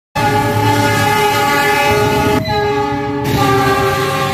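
Diesel locomotive's multi-tone air horn, held in one long blast as the train passes close by. About two and a half seconds in, the chord dips and shifts lower, then carries on.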